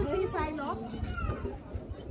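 Speech: a child's voice talking briefly, then fainter voices in the background.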